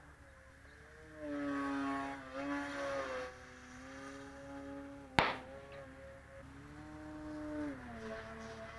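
Electric motor and propeller of a 55-inch Skywing Edge RC 3D aerobatic plane whining overhead, the pitch rising and falling with bursts of throttle: loud about one to three seconds in, then again near the end before dropping off. A single sharp click about five seconds in.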